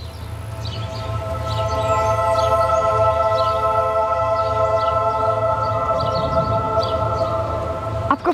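Background score: a sustained synthesizer chord that swells in over the first couple of seconds and then holds steady over a low rumble.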